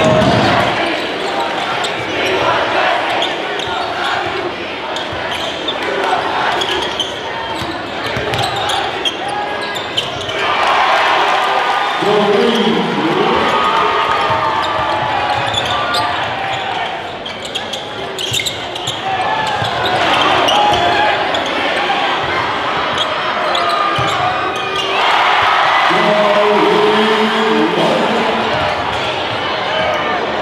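Basketball game sound in a gymnasium: a ball bouncing on the hardwood court amid a crowd's voices. Louder shouting comes in two spells, partway through and again near the end.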